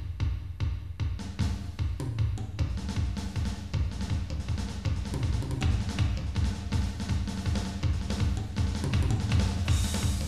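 Drum kit played live, a busy stream of bass drum, snare and cymbal strokes, several a second.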